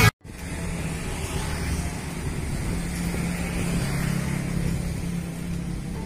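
Street background noise with a motor vehicle's engine running nearby, its low hum growing stronger in the middle seconds and easing off near the end.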